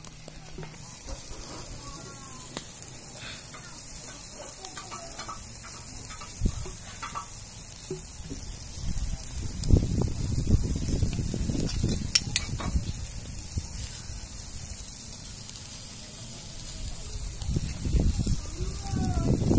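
Chicken pieces sizzling on a wire grill over wood embers, a steady hiss. About halfway through come a few seconds of louder low rumbling and knocks.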